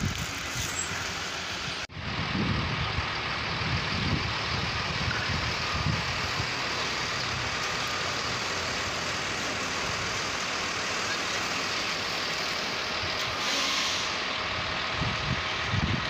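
Steady downtown street traffic noise, a continuous rumble and hiss of passing vehicles, with a brief louder hiss near the end.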